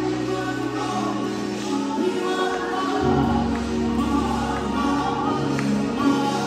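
Gospel worship music: voices singing together over held chords, with the bass note changing about halfway through.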